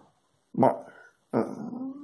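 A man's voice making two short, drawn-out hesitation sounds, the second falling in pitch, in a pause in the middle of a sentence.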